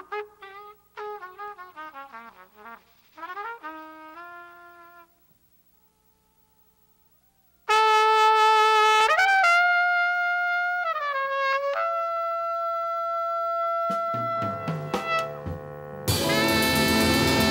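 Unaccompanied jazz trumpet playing quick descending runs, then a pause of about two and a half seconds. It comes back loud on a long held note that bends upward, slides down, and settles on another sustained note. Near the end the band comes in under it with drums and bass.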